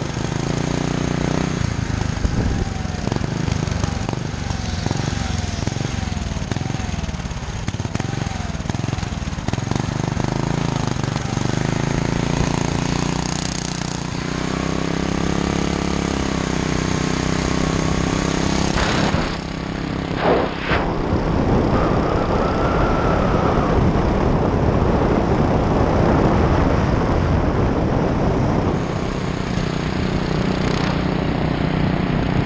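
Small single-cylinder engine of a motorized go-bike running at riding speed, its note rising and falling a little, with wind noise over the microphone.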